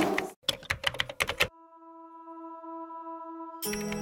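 Keyboard-typing sound effect for an on-screen title: a quick run of about ten clicks lasting about a second, followed by a steady electronic tone that slowly swells for about two seconds.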